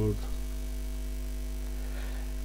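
A steady low electrical hum, like mains hum picked up in the recording, holding an even level throughout.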